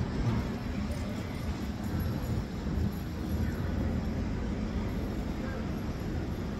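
Steady low rumble of city street noise, with traffic going by in the background.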